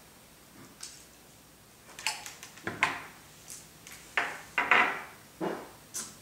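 Short knocks and clatters from a small RC helicopter being handled and set down on a wooden table. There is one faint knock early, and from about two seconds in a quick run of louder ones.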